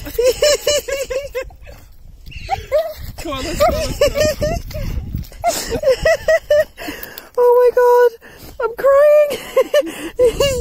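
A person laughing hard in high-pitched, rapid bursts of "ha-ha-ha", broken by two longer drawn-out vocal cries near the end.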